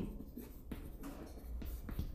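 Chalk writing on a chalkboard: a run of short, faint scratching strokes as letters are written.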